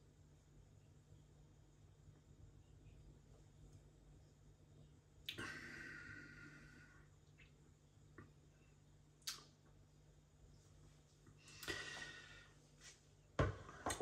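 Quiet room with a faint steady hum; two audible breaths out while a beer is being tasted, about five and about twelve seconds in, and a sharp knock shortly before the end as the glass is set down on the counter.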